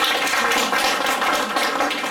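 A roomful of people applauding: a steady patter of many hands clapping.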